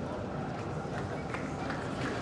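Spectators chatting in the stands: a steady murmur of many voices with no single voice standing out, and a few faint clicks about a second and a half in.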